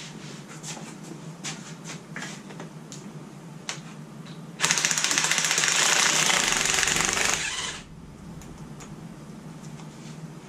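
Cordless impact driver hammering steadily for about three seconds, starting about halfway through, as it backs out an oil pan bolt. Before it come light clicks and knocks of tools being handled.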